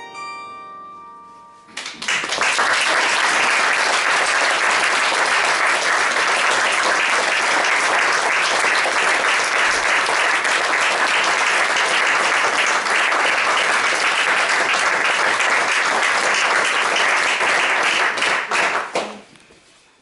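The last chord of a bandura ringing out and dying away, then an audience applauding steadily for about seventeen seconds, tailing off shortly before the end.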